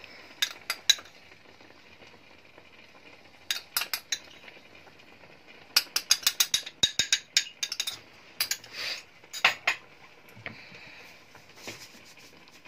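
Spice containers and a metal spoon clinking and tapping against a stainless steel pan as masala powders are tipped onto chicken mince: scattered short clicks, with a quick run of taps about six seconds in.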